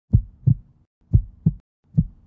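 Heartbeat sound effect: deep thumps in lub-dub pairs, one pair each second, with a third pair starting at the very end.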